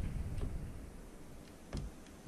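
Faint handling sounds of a flexible magnetic build sheet being positioned on a 3D printer bed: a few soft clicks, then a single sharper tap near the end.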